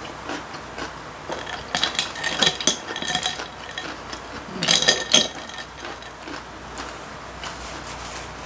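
A long metal spoon clinking against a glass and its ice cubes as an iced drink is stirred, in two rapid runs of bright, ringing clinks.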